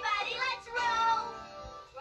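A children's cartoon song: a child's voice singing over music, with some notes held and wavering.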